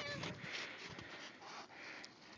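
Saint Bernard panting close by, a faint repeated breathy hiss, with soft crunches of footsteps in snow.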